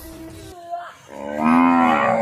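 A cow mooing: one long, loud call that starts about a second in.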